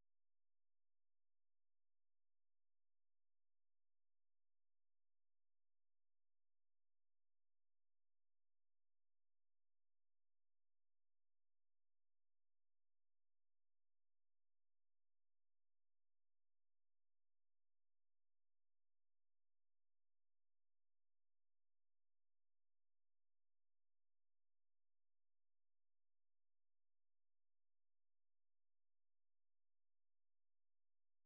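Near silence: the audio is blank, with no sound at all.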